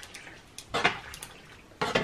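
A metal utensil scraping and clinking against a non-stick pot while pasta is stirred, with a short clatter a little under a second in.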